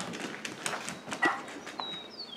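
A dog's claws clicking on a hardwood floor as it trots across the room: a handful of irregular light taps.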